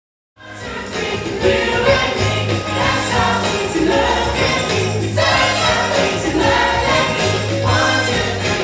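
Male singers performing a lively pop number with backing music, a steady bass line and a jingling tambourine-like beat. The sound cuts in abruptly about a third of a second in.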